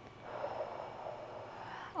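A woman's long, deep breath out through the mouth, beginning about a quarter second in.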